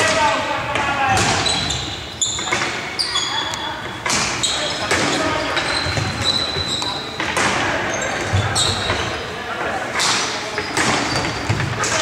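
Indoor hockey play in an echoing sports hall: sharp knocks of sticks on the ball, repeated irregularly about once a second, with short high squeaks and players' shouts.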